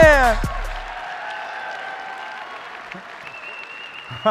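A hip hop track ends with a falling vocal note and its bass cutting out within the first second, then an audience applauding and cheering, the applause slowly dying down.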